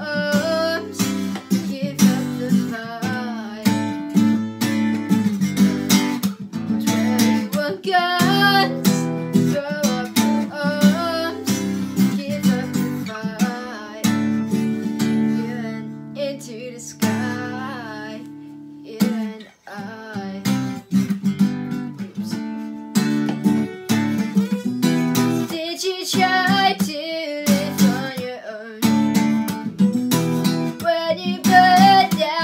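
Acoustic guitar strummed in a steady rhythm, with a young woman singing over it. About two-thirds of the way through, one chord is left to ring, the sound drops away briefly, and the strumming starts again.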